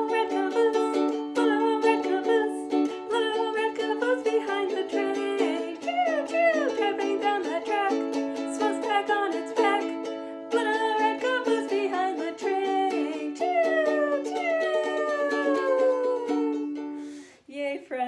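Ukulele strummed quickly while a woman sings a fast children's song. Near the end her voice slides down in pitch in a long falling glide, and the playing stops suddenly about a second before the end.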